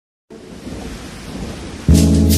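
Rain and thunder sound effect opening a chill-out jazz track, a hiss with low rumble that grows louder. Near the end the music cuts in suddenly with deep, sustained bass notes.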